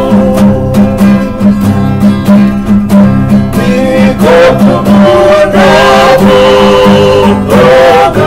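Several men singing together in harmony to strummed acoustic guitars. The strumming is plainest in the first half, and the singers hold long chords from about halfway through.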